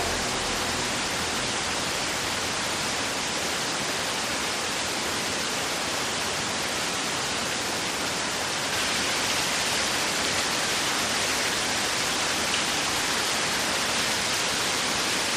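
Waterfall pouring steadily, a continuous rushing of falling water that gets slightly louder about nine seconds in.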